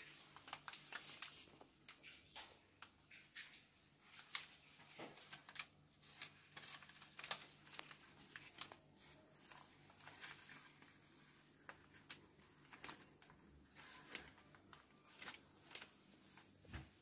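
Faint, irregular rustling and light scratching from several young kittens crawling and scrambling over a cloth and a printed wrapper.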